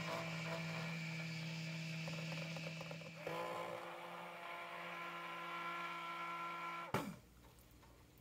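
Immersion (stick) blender motor running steadily in cold-process soap batter in a glass bowl, mixing the oils and lye water together. Its pitch steps up a little about three seconds in, and it cuts off suddenly about a second before the end.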